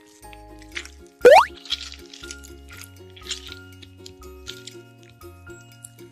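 Children's background music with a steady stepping bass line. About a second in comes a loud, fast-rising whistle-like sound effect. Soft wet squishes and plops follow at intervals as a pink slime is pulled from its tub and squeezed between fingers.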